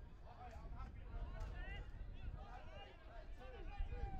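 Distant shouts and calls from several men at once, short rising and falling cries, over a steady low rumble.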